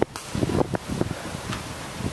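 Wind rushing across the microphone, with a few short knocks in the first second.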